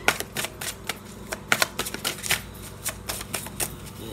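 A tarot deck being shuffled by hand: a run of sharp, irregular card clicks and slaps, several a second.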